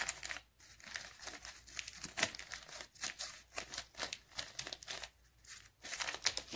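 Advertisement paper crinkling and rustling in irregular crackles as it is folded and pressed around a small rock.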